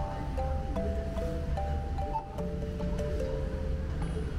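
Background music: a melody of held notes stepping up and down over a steady bass line.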